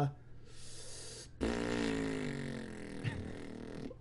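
A man's voice: a short breath, then a long, drawn-out hesitant "uhh" held on one pitch for about two and a half seconds, while he searches for his next word.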